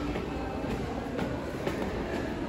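Footsteps climbing stone stairs: faint taps about every half second over a steady low rumble.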